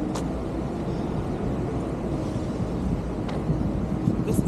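Outdoor city street noise: a steady low rumble of traffic, with a short click just after the start and a fainter one about three seconds in.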